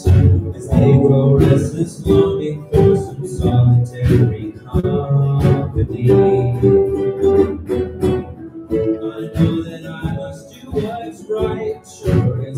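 A small school ensemble playing live, with sustained pitched notes over a steady beat of percussive strokes about twice a second.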